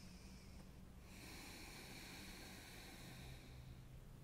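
Faint, slow deep breathing: a brief breath around the start, then one long, smooth breath lasting nearly three seconds from about a second in.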